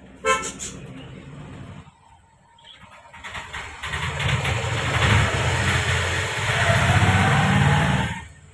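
A vehicle horn gives one short toot, then a motor vehicle's engine and road noise grow loud as it passes close, and the sound cuts off suddenly.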